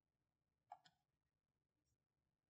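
Near silence, with one faint, brief sound about three-quarters of a second in.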